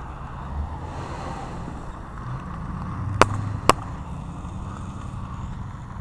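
A truck passing on the road, a low rumble that fades. Two sharp clicks half a second apart come a little past the middle.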